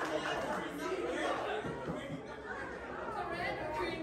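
Low chatter of several voices talking quietly at once, with no one speaking into the microphone.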